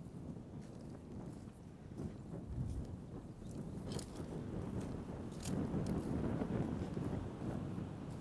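Wind on the microphone, a low rumbling that swells louder in the second half, with a few faint crackling clicks.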